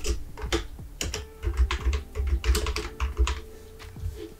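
Typing on a computer keyboard: an irregular run of quick keystrokes, thickest in the middle.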